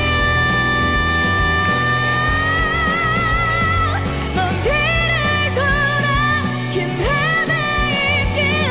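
A female pop singer singing live over rock accompaniment with a steady bass line, holding one long high note for about four seconds, with vibrato coming in about halfway, then moving into shorter phrases.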